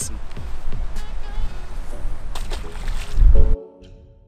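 Loud rumbling outdoor noise on the camera microphone, strongest just before it cuts off about three and a half seconds in. Quiet background music with sustained tones follows.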